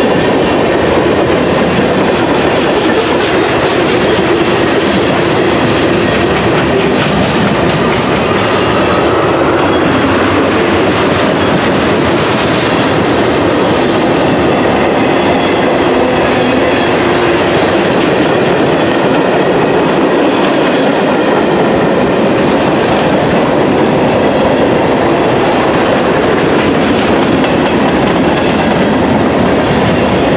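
Freight train cars (tank cars, a covered hopper and boxcars) rolling past: a steady, loud noise of steel wheels running on the rails.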